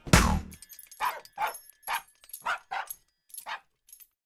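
The cartoon theme tune ends on one last loud note, then animated puppies give about seven short barks and yips, spaced a few tenths of a second apart.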